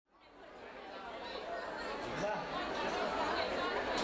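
Indistinct chatter of many people talking at once, fading in from silence at the start.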